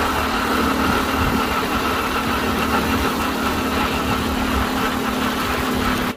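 Motorcycle engine running steadily while under way, heard from on the bike, with a constant hum and a faint higher whine. It cuts off suddenly at the end.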